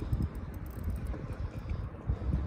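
Wind buffeting the microphone, an uneven low rumble.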